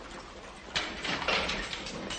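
A barred iron gate being unlocked and pulled open: a quick run of metallic clanks and rattles starting just under a second in.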